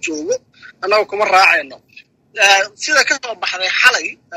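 Speech only: a man talking in Somali over a telephone line, with short pauses.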